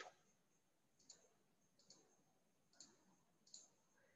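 Near silence broken by four faint, sharp clicks under a second apart: someone clicking at a computer while a slideshow is moved on to a new slide.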